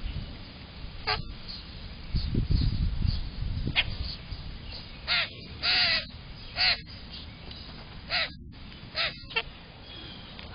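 Common grackles calling at a feeder: a series of about eight short, harsh calls spread across the seconds, one of them longer, with a low rumble close to the microphone about two to three seconds in.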